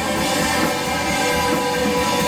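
Live rock band playing an instrumental passage: electric guitars holding steady, sustained chords over bass guitar and drum kit.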